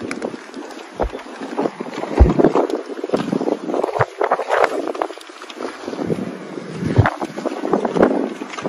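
Wind buffeting a handheld phone's microphone, with irregular rustling and footsteps as the person filming walks on sandy ground, and a few low thumps.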